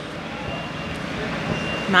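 Rustling handling noise from a handheld microphone being passed from one person to another, with faint voices in the background.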